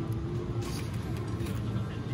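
Steady low hum of a busy shop interior with faint voices. A few light clicks of plastic pens being handled come about halfway through.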